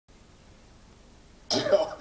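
Faint hiss, then about one and a half seconds in a man's voice starts abruptly, played from a television set's speaker.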